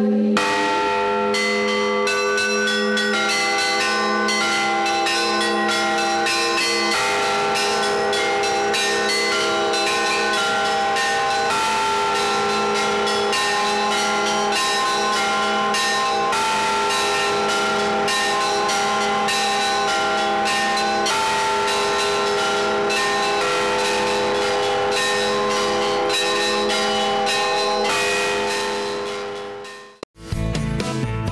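Russian Orthodox church bells rung by hand, their clappers pulled on ropes: a quick, continuous peal of small high bells over deeper bells, fading out near the end.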